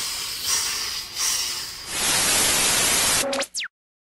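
Static-like hiss: a rushing noise that settles into a steady, even hiss about halfway through. Near the end it gives way to a brief low tone and a quick falling whistle, then cuts off suddenly.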